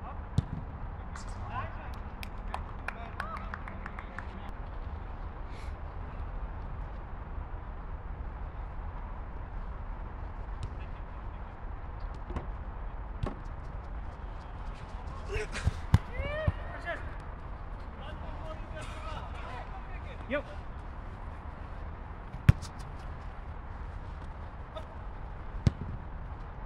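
Football being kicked a few times, each kick a sharp thud, with players shouting short calls, over a steady low background rumble.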